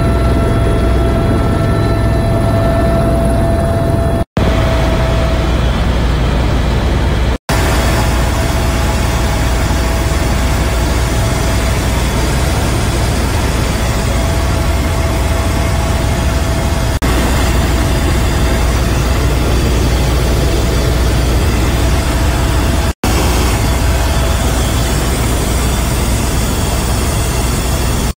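Loud, steady helicopter cabin noise: rotor and engine with a deep rumble, and a steady whine in the first few seconds. It breaks off abruptly three times for a moment.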